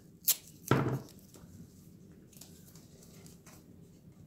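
A sharp click, then a short rushing sound just under a second in, followed by quiet room tone with faint handling of thin wooden roof pieces on a workbench.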